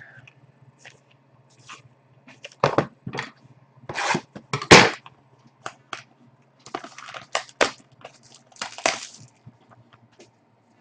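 Hockey card packs being handled and a wrapped pack worked open by hand: irregular crinkles, rustles and light taps, loudest near the middle. A faint steady low hum runs underneath.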